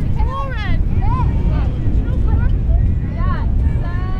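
Wind buffeting the microphone in a steady low rumble, with girls' voices calling out across the field in short high shouts throughout.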